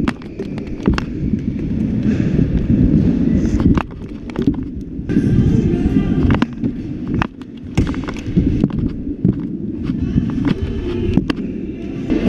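Stunt scooter wheels rolling over skatepark ramps with a constant low rumble, broken by repeated sharp clacks of the deck and wheels hitting and landing on the ramps.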